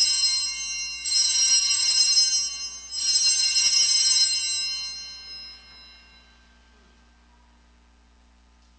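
Altar bells rung at the elevation of the chalice during the consecration. One ring is already sounding, two more come about a second and three seconds in, and the last dies away over a few seconds.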